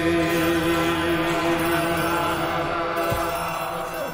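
A man singing one long held note that ends a little over three seconds in, with a low thump just before it stops.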